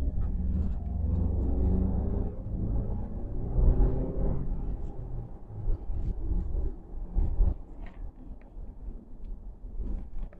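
Car driving along a road, heard from inside the car: a low engine and road rumble, the engine's pitch climbing as it speeds up during the first half, then easing to a quieter rumble.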